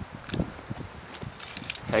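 Light metallic jingling and scattered small clicks, like keys or small metal tools being handled, growing brighter near the end.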